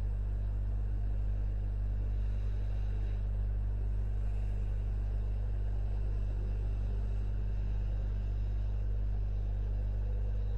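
A steady low hum with faint hiss, unchanging throughout and with no other events: the background noise of the recording setup.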